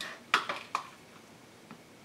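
Three or four light, sharp plastic clicks within the first second, from an acrylic ruler being settled on a cutting mat and a rotary cutter being picked up.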